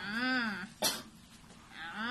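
Two short pitched vocal calls, each rising and then falling in pitch, about two seconds apart, with a single sharp click between them.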